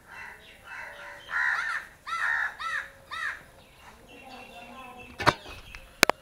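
A bird calling in a quick series of about six short arched calls over roughly two seconds, then a single sharp knock near the end.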